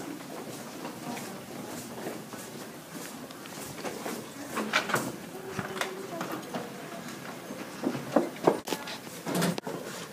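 Scattered knocks and clicks from people handling things and moving about, with faint murmured voices.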